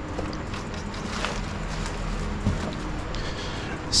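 Faint handling noise from plastic fuel pump assemblies: light rustling and a couple of soft clicks, over a steady background hiss.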